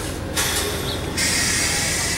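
Amtrak passenger cars rolling slowly out of the station, wheels rumbling on the rails under a steady hiss that grows louder just over a second in.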